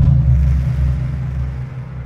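A deep rumble added as an intro sound effect, loudest at the start and slowly dying away.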